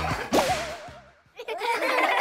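A sharp whip-like swish sound effect with a short wobbling tone after it. The music drops away for a moment, then new music starts near the end.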